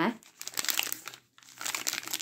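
Plastic instant hot chocolate sachets crinkling as a bundle of them is handled, in two short bouts with a brief pause between.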